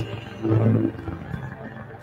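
Low-pitched electronic sound from a live improvised performance. It swells up about half a second in and then sinks back to a quieter low tone.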